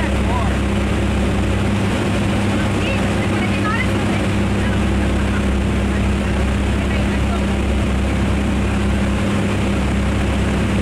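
Steady drone of a small single-engine jump plane's engine and propeller heard from inside the cabin, mixed with rushing wind, at an unchanging level throughout.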